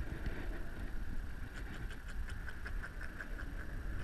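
A steady low rumble of wind and choppy water on an open-air microphone. A run of faint light clicks comes through the middle.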